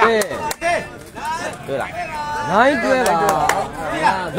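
A few sharp knocks in the first second, a sepak takraw ball striking the court, then several people shouting and calling.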